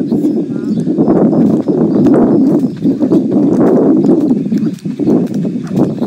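A jump rope slapping the ground in a repeated rhythm as it is turned and jumped, over loud, steady low noise.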